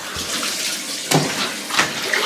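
Water running steadily from a bathroom tap, with a short louder knock or splash about a second in.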